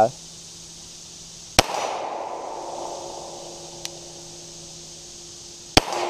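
Two shots from a .45 ACP Glock 30 pistol, about four seconds apart. Each sharp crack is followed by an echo that dies away over a second or two.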